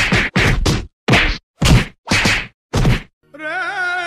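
A quick series of about seven whacks of fists on a body, spacing out to roughly one every half second. A little after three seconds in, a held musical note starts, wavering at first.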